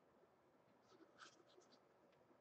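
Near silence: quiet room tone with a few faint, brief scratches about a second in.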